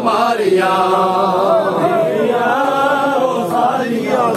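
Men's voices chanting a noha, a Shia mourning lament, sung in long held, wavering notes without instruments.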